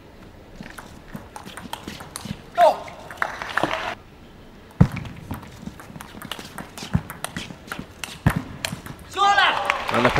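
Table tennis ball struck back and forth in a rally: a run of sharp clicks off the bats and table, the loudest knock about five seconds in.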